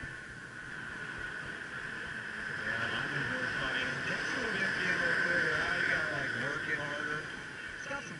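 Busy beach ambience: a steady wash of surf with indistinct voices from the crowd, the voices growing a little louder from about three seconds in.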